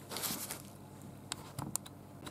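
Paper sandwich wrapper rustling briefly as the sandwich is handled on it, followed by a few faint clicks.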